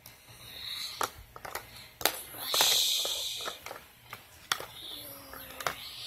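Handling noise from plastic toys: a doll and building blocks knocked and shuffled, with several sharp clicks and a couple of short hissing rustles, the longest about halfway through.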